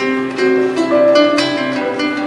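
Live band playing an instrumental passage of a slow song with no singing: a melodic line over keyboard, electric bass and drums, with a couple of sharp cymbal-like hits.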